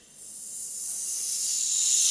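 A long, steady hiss like a drawn-out "sss" from a soprano's voice, swelling gradually louder.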